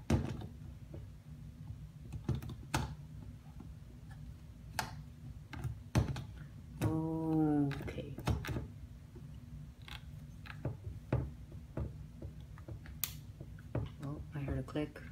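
Irregular plastic clicks and knocks of a zoom lens being fitted and twisted onto a Canon DSLR body's lens mount and the camera being handled. A man gives one short hum, falling in pitch, about seven seconds in.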